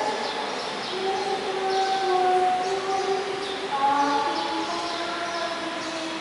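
Voices singing a slow hymn, its melody moving in long held notes.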